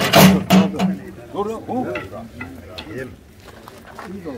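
Granulated sugar scooped from a sack with a metal bowl and poured out, a loud gritty hiss of grains in the first second, followed by men's voices.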